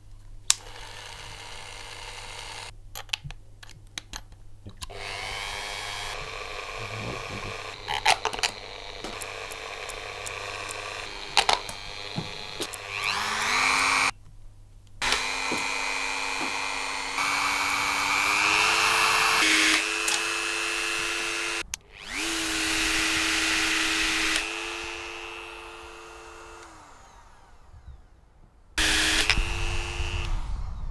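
A toy's small electric motor on a high-voltage supply whining. The whine rises in pitch about halfway through, cuts out briefly twice and steps higher, then winds down near the end. Before the motor starts there are clicks and rattles.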